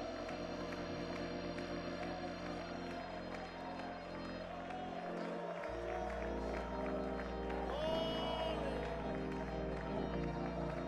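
Slow worship music of long held chords, the bass moving to a new, lower note about halfway through, with a congregation's voices faint beneath it.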